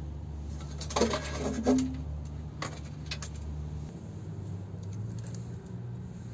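Small metallic clinks and rattles of wire terminals and tools being handled while cables are connected to a 12-volt battery, a cluster about a second in and single clicks after. A steady low hum underneath drops away about four seconds in.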